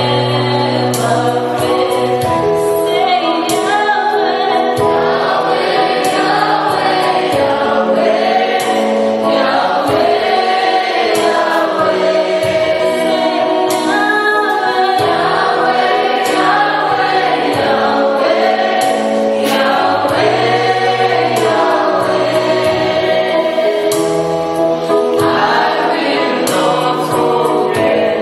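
Live gospel worship song: a woman's voice leads the singing, with a group of backing vocalists and keyboard accompaniment.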